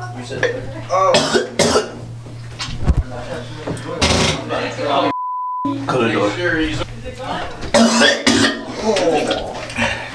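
A man coughing and gagging over a toilet in loud, harsh fits, from the burn of an extremely hot Carolina Reaper chili chip. About halfway through, a short censor bleep cuts in, over a steady low hum.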